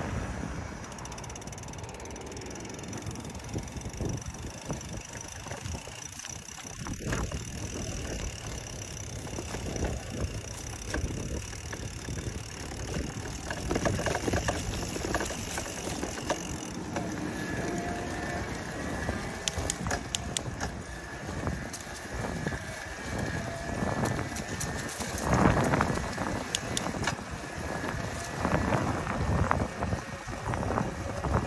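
A Specialized Turbo Vado e-bike being ridden on pavement: a steady rush of wind and rolling noise, with scattered clicks and rattles from the bike.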